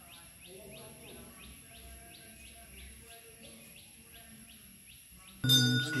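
A bird calling over and over with short, faint rising chirps, about three a second. Near the end a loud temple bell suddenly starts ringing.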